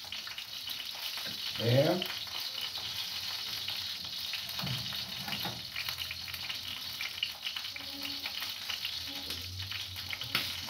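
Chicken feet and meat frying in a pan with a steady sizzle. A short rising tone about two seconds in stands out as the loudest moment, with a fainter falling one around five seconds.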